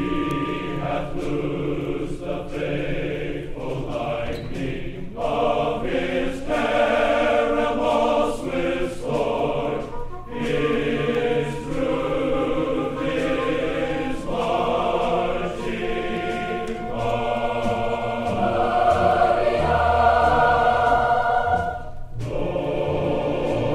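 A choir singing sustained chords, played from a vinyl LP of a live 1967 concert recording. The sound is dull and lacks treble, and it grows a little louder near the end.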